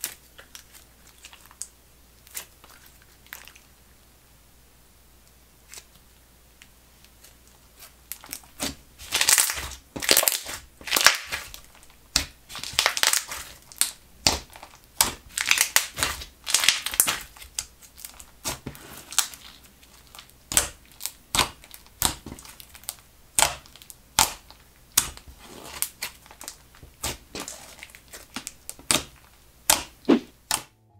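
Thick, glossy slime being pressed and squished by hand, giving off a rapid run of sharp pops and crackles as air bubbles in it burst. It is quiet with only a few faint clicks for about the first eight seconds, then the popping comes thick and fast.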